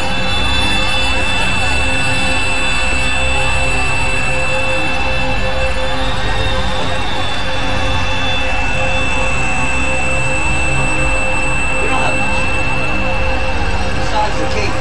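Experimental electronic noise drone from synthesizers: a dense, steady wash of noise with several held tones, one low and others high, and no beat.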